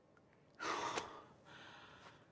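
A man's gasping sob about half a second in, followed by a softer, breathy exhale.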